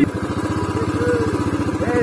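The single-cylinder engine of a Royal Enfield Classic 350 motorcycle running at low revs, with a steady, even beat of exhaust pulses.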